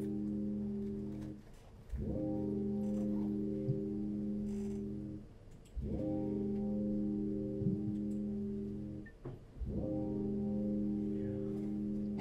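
Live musical accompaniment of long, held guitar chords, steady and ringing. Each chord fades out briefly and a new one is struck about every four seconds, three times in all.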